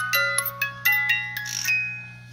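Small wind-up cylinder music box movement playing its tune, with bright plucked notes ringing over each other. Near the end there is a brief rustle, and the tune stops and fades out as the lid comes down.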